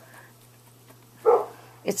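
A dog gives one short bark just past a second in, an alert bark at something outside.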